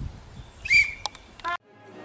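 A short, loud high-pitched call about three quarters of a second in and a brief rising chirp just before the sound cuts off abruptly; a band's music then fades in faintly near the end.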